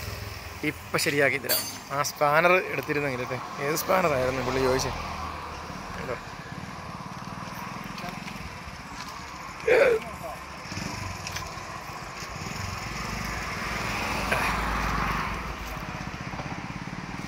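People talking for the first few seconds, over a steady low background rumble that continues after the talk stops; a short call sounds about ten seconds in.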